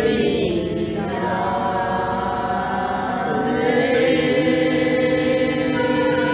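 A group of voices singing a devotional prayer song (bhajan) together, in slow, long-held notes.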